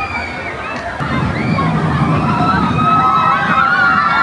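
Steel looping roller coaster train rumbling along its track, getting louder about a second in as it comes through, with many voices and shrieks of riders and onlookers over it.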